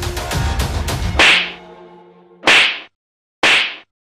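Background music with a steady drum beat is cut off about a second in by a loud, sharp hit sound effect, with a short ringing tail. Two more sharp hits follow, about a second apart, each followed by dead silence: added punch or whip effects for a fight scene.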